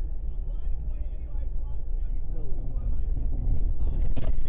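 Steady low rumble of a vehicle driving along a snow-covered track, heard from inside its cabin.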